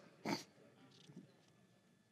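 Quiet room tone from a stage microphone in a pause, with one short breath-like sound about a quarter second in and a few faint soft sounds after it.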